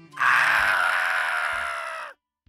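A loud, strained vocal screech held for nearly two seconds, starting a moment in and cutting off suddenly: the flustered character's scream.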